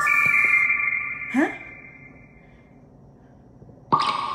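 An electronic chime of rising notes, the last one landing at the start, rings on and fades away over about two and a half seconds. About a second and a half in, a short voice sound rises in pitch. A new chime note starts right at the end.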